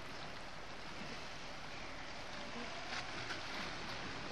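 Steady, even wash of sea surf against a rocky shore.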